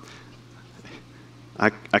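Low room noise with a steady electrical hum from the sound system, then a man's voice starting about one and a half seconds in.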